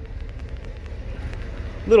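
Steady low rumble of outdoor background noise, with no distinct sound events.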